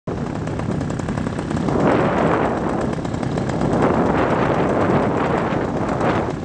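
Paramotor's two-stroke engine and propeller running in flight, a loud, rapid rattling pulse.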